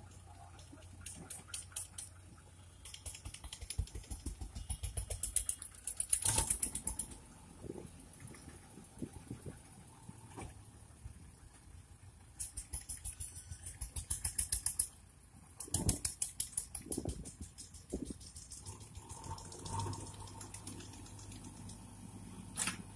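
JCB backhoe loader working, its diesel engine giving a faint steady hum under repeated bursts of rapid, sharp clattering clicks.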